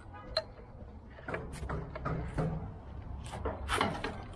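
Scattered clicks and knocks over a low rumble as a pressure-washer surface cleaner is handled onto its trailer mount, with the loudest knock near the end.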